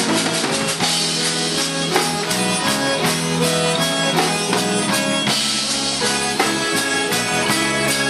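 Live zydeco band playing a slow instrumental passage: accordion carrying the melody in sustained chords over an even drum kit beat and guitar.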